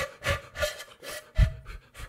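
Breathy attempts to sound a shakuhachi, an old bamboo Japanese end-blown flute: about five short puffs of air across the mouthpiece that mostly hiss, with only faint, brief notes catching. A loud breath blast hits the microphone about 1.4 s in. The open blowing edge has no fipple, so a note only comes with the right embouchure.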